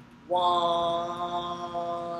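A man's voice sustaining the spoken count "one" on a steady, chant-like pitch for about two seconds, holding the final half note of a 2/4 counting exercise.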